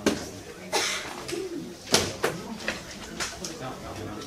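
Classroom background of students talking quietly among themselves, broken by several sharp knocks and paper sounds as slips are passed along the desks. The loudest knock comes about two seconds in.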